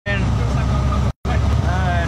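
Steady low rumble of a boat engine running, with voices over it; the sound cuts out for a moment just after a second in.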